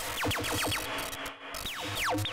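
Eurorack modular synthesizer patch sounding short electronic zaps that fall in pitch. They come in an irregular run: several quickly in the first second, a brief gap, then another near the end, over a low pulsing hum. The uneven timing comes from the Batumi quad LFO's channels cross-modulating one another.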